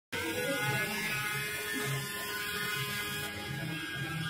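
Small DC hobby motor spinning a plastic propeller at full speed, running steadily with an electric whine.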